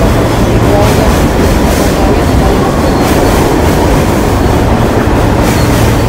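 Subway train running on the rails: a loud, steady rumble of wheels on track.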